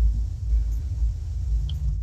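Steady low rumble, a background noise carried on the microphone line of a video call.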